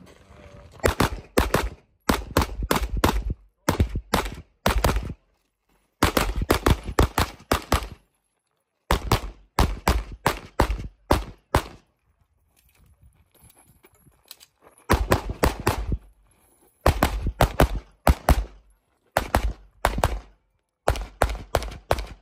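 Rapid handgun fire in strings of several quick shots, with short pauses between strings, as a shooter engages targets during a timed practical shooting stage.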